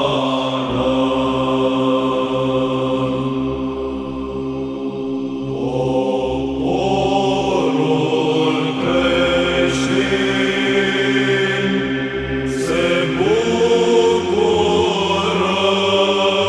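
Romanian Orthodox psaltic (Byzantine) chant in the fifth tone. Voices hold a steady drone note under a slowly moving melody of long sustained notes. The drone and melody shift to a new pitch about 13 seconds in.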